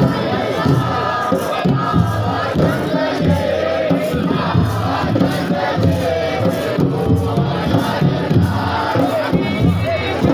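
Siddi dhamal: a group of men chanting and singing together in a loud, crowd-like chorus over a steady drumbeat.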